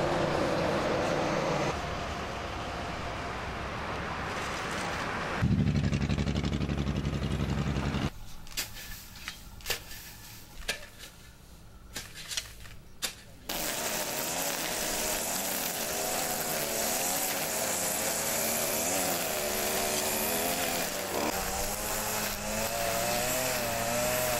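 Outdoor road-work machinery, with a loud deep rumble from about five to eight seconds in, then a quieter stretch of scattered sharp knocks from hand tools. From about thirteen seconds in, a small engine runs steadily with a wavering pitch, fitting a gas string trimmer cutting weeds.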